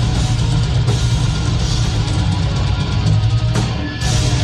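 Heavy metal band playing live: distorted electric guitars, bass and drum kit, loud and dense, heard from the crowd through a phone's microphone. The sound thins briefly near the end before the full band comes back in.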